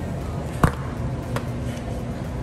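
A single sharp knock about two-thirds of a second in, then a lighter click, over a steady low store hum, as frozen goods are handled at a glass-door supermarket freezer.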